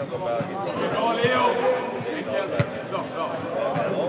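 Players calling and shouting during an indoor football match, with several sharp thuds of the ball being kicked.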